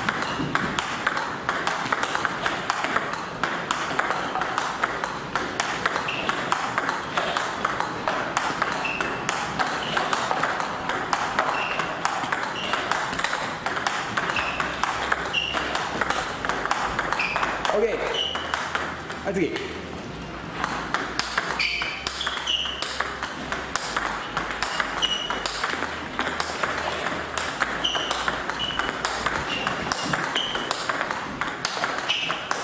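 Table tennis multiball practice: a rapid, unbroken run of sharp clicks as a stream of celluloid-type plastic balls is fed, struck with flat meet strokes off a rubber-faced paddle, and bounces on the table.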